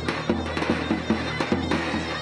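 Zurna (double-reed folk shawm) playing a loud, reedy dance melody over a steady drum beat of several strokes a second.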